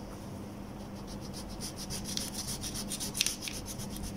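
Pencil writing on paper: quick scratchy strokes that grow busier after about a second and a half.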